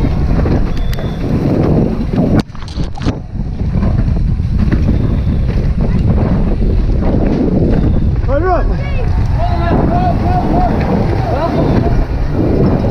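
Wind rushing over a helmet camera and tyres rattling over a dirt trail on a downhill mountain bike at race speed, with a brief lull about two and a half seconds in. Spectators shout from beside the trail in the second half.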